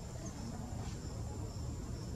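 Steady high-pitched insect chorus in forest, with a continuous low rumble underneath.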